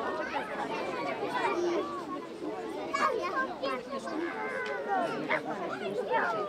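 Many children's voices chattering and calling out at once, overlapping into a babble with no single clear speaker.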